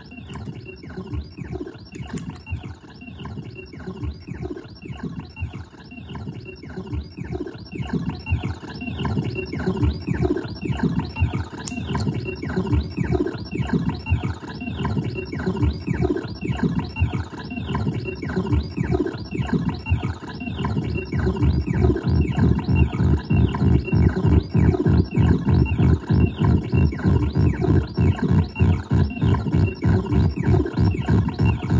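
No-input feedback loop run through guitar effects pedals (a Hotone tremolo, a Boss SL-2 Slicer and an Alexander Syntax Error): a rhythmically chopped, pulsing noise drone with its weight low down. It grows louder about eight seconds in and again about twenty-one seconds in.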